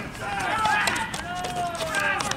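Several voices talking and calling out at once, overlapping, with one drawn-out call near the end; a few sharp clicks among them.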